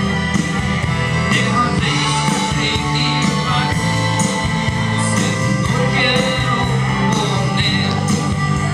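Live band playing an upbeat rock-and-roll song: a male voice singing over strummed acoustic guitar, a walking bass line and drums keeping a steady beat.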